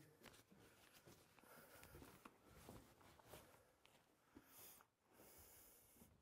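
Near silence: faint room tone with a few soft clicks and rustles.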